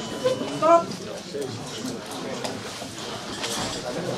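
Background voices: one short call about half a second in, then ongoing mixed talk from people around the ring.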